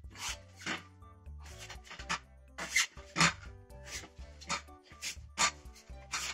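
Hands pushing and rolling a freshly glued, inflated tubular tyre to seat it on a carbon road rim: irregular short rubbing and scraping strokes, about seven in a few seconds, over steady background music.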